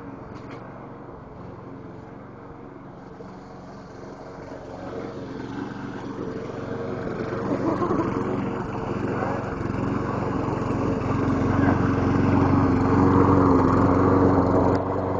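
An engine running steadily at an even pitch, growing much louder through the second half as it comes closer.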